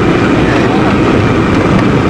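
Steady road and engine noise inside a moving taxi travelling at speed, a dense low rumble with no breaks.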